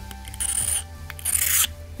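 A metal blade scraping twice along the Samsung Galaxy Fold 3's Armor Aluminum frame, two short hissing strokes. It is a scratch test of the frame, which scratches about the same as other aluminum phones.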